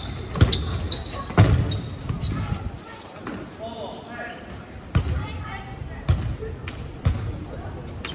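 Dodgeballs thrown in play, making about five sharp thuds as they strike the court and the players. The two loudest come within the first second and a half. Players' shouts and calls come in between.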